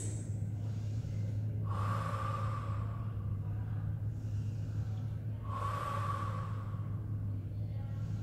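A woman breathing audibly while exercising: two long exhales, each about a second, about four seconds apart, paced with leg extensions. A steady low hum runs underneath.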